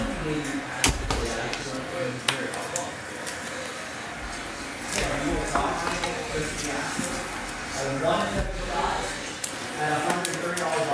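Trading cards being handled and set down on a table, giving a few sharp clicks and taps, with a man's voice faintly in between.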